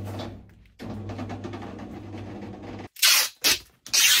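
Blue 'low noise' parcel tape pulled off a handheld dispenser across a cardboard box in three loud strips near the end, still noisy despite the low-noise label. Before that a steady low hum.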